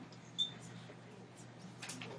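Quiet room with one brief high-pitched squeak about half a second in, then a few faint ticks and a sharp click near the end.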